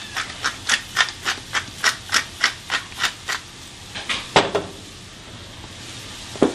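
Black pepper being dispensed from its container over a pot of onions and mushrooms, a regular rattle of about three or four strokes a second that stops a little past three seconds in. A single sharp knock follows about four and a half seconds in.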